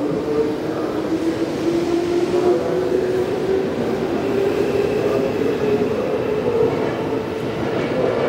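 Electric commuter train running out of the station on a far track, with a steady rumble and a hum of pitched motor tones.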